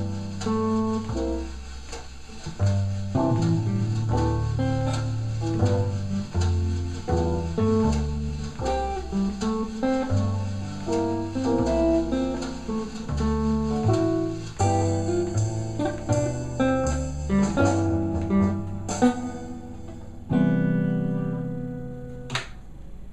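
Archtop hollow-body electric guitar playing a jazz ballad in chords and single-note lines over a jazz backing track with bass. Near the end it settles on one sustained chord that rings out.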